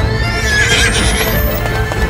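A horse whinnying briefly, with a quavering pitch, about half a second in. Underneath run background music and a thin tone that rises steadily in pitch.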